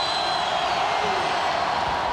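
Packed basketball arena crowd yelling, a loud, steady wall of many voices with no single voice standing out.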